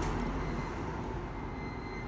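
Steady low background rumble with a thin, constant high whine over it.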